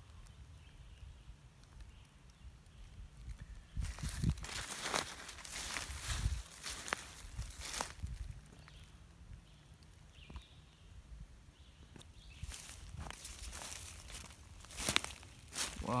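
Footsteps crunching through dry leaf litter, in two spells of steps: a few seconds in and again near the end.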